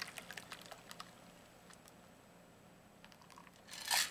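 Faint clicks and crunching of ice inside a cocktail shaker as the shaken margarita is strained out into a glass, dying away after about a second, then a short, louder knock just before the end.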